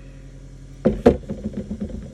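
Two sharp knocks about a second in, then a quick run of lighter, irregular knocks and clatter, as hard objects are handled and set down on a work table. A steady low hum runs underneath.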